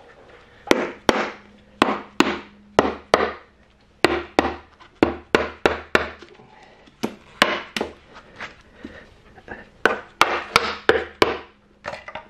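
Mallet lightly tapping the valve cover of a Suzuki GSX-R750 engine, about twenty sharp knocks, often in quick pairs, to break the cover loose from its gasket seal.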